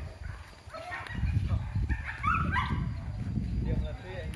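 Hunting dogs barking and yelping, a few short calls over a low rumble.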